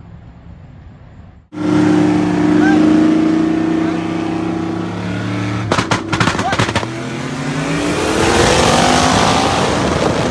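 Car engine under hard acceleration heard from inside a racing car, at a steady pitch at first, then a brief burst of clatter about six seconds in. After that the engine pitch climbs steadily toward the end, with rushing wind noise growing. It starts suddenly after a quiet first second and a half.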